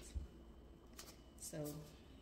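Faint handling noise from a phone being moved in closer while recording: a low bump just after the start and a single sharp click about a second in. A woman says "So" near the end.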